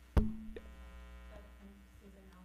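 A single sharp knock, likely a hand bumping a table microphone, about a fifth of a second in. A low ringing tone follows for about a second and fades, over a steady electrical hum.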